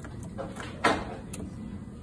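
Reset push button on an industrial control panel pressed to reset a safety relay: one sharp click a little under a second in, then a faint tick about half a second later.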